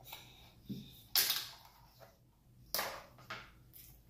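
Eating by hand from a metal pot: a handful of short scrapes and smacks of fingers working rice in the pot and of chewing, the loudest about a second in.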